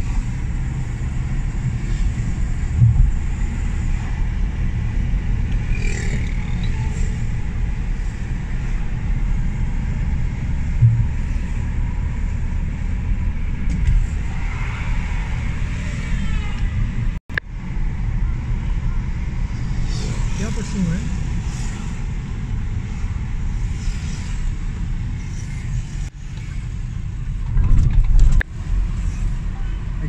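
Steady low rumble of a car driving through city traffic, heard from inside the cabin, with a brief gap in the sound a little past halfway.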